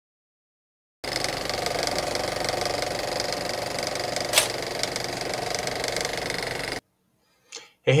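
A steady, rapid mechanical clatter with a whine, laid over the title card as an intro sound effect. It starts abruptly about a second in, has one sharp click midway and cuts off abruptly; a man's voice says "Hey" at the very end.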